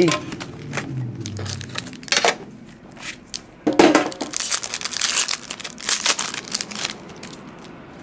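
Foil and plastic wrapping of baseball card packs crinkling and tearing as it is pulled open by hand, in bursts of sharp crackles that are loudest for a few seconds from about the middle.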